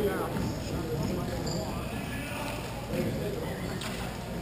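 Hockey play at the far end of an indoor rink, echoing in the hall: players' voices calling, with scattered clacks of sticks and puck.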